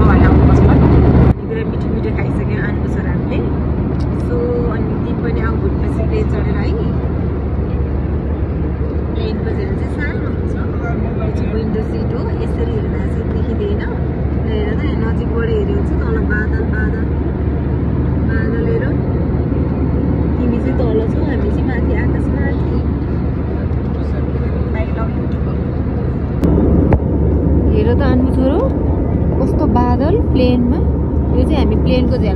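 Steady low rumble of a jet airliner's cabin in cruise, with faint voices of other passengers. The noise changes abruptly, dropping a little about a second in and rising again near the end.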